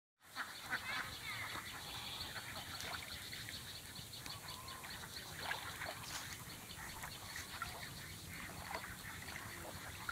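Outdoor pond-side ambience of birds calling and chirping, with many short calls and a few brief gliding ones, over a low steady background rumble.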